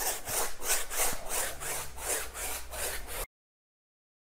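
Flat paintbrush scrubbing gloss varnish back and forth across a stretched canvas, a quick even rhythm of scratchy strokes about four to five a second. The sound cuts off suddenly near the end.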